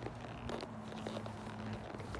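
A horse's hooves stepping at a walk on dirt and straw: a few soft, separate crunching footfalls. A faint steady low hum runs underneath and stops shortly before the end.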